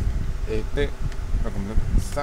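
A steady low buzzing hum runs throughout, with two short bits of a man's voice, about half a second in and again near one and a half seconds.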